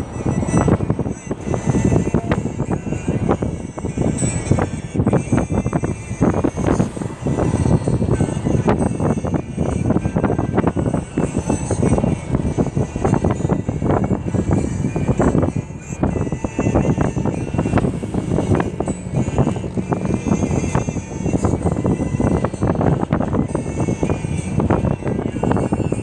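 Steady road and engine noise inside a moving vehicle's cabin at motorway speed, with music playing.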